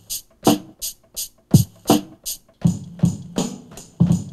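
Programmed hip-hop drum beat played from a Native Instruments Maschine sampler: deep kick-drum thumps and crisp high hits in a sparse, even rhythm. About two and a half seconds in, a steady low hum joins under the beat as the pattern fills out with quicker hits.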